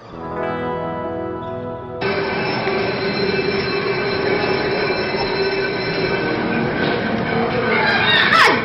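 A held musical chord for about two seconds, then a sudden switch to loud, steady screeching and rumbling noise with a held high tone, like train wheels squealing, in a foggy haunted attraction.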